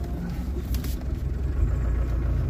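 Land Rover engine and drivetrain running at crawling speed in low-range gear with the centre differential locked, heard from inside the cab as a steady low rumble that grows a little stronger near the end. A short burst of noise about three quarters of a second in.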